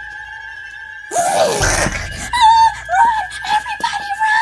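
A person's voice letting out a loud, sudden scream about a second in, followed by a string of short, high, wavering cries, over a steady high hum.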